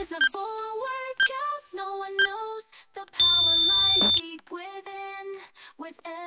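Backing music with its drum beat dropped out, carrying a pitched melody. About three seconds in, a loud, steady electronic beep sounds for about a second, the workout timer's signal that the exercise interval has ended.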